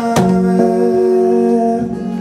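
Live acoustic guitar and male voice: a chord is strummed just after the start, and a sung note is held over the ringing guitar.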